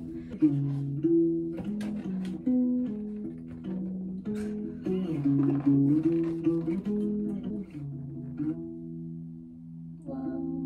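Acoustic guitar played with picked notes and chords, the pitches changing about every half second. Near the end a low chord is held and rings out, fading.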